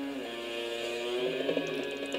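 Guitar music: held notes ringing and sliding to new pitches, with no singing.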